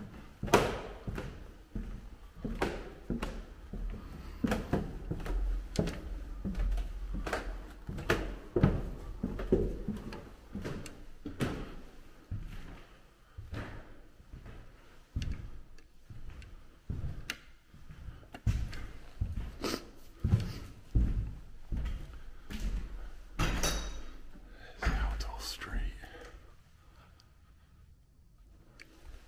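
Footsteps on wooden stairs and floors at a walking pace: a run of short, hollow knocks and thunks that tails off near the end.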